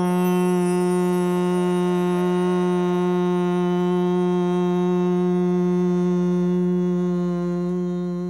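A single sustained drone note, one steady pitch with many overtones, held without change and beginning to fade near the end.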